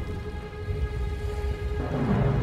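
Film score holding a quiet sustained chord over a low rumble.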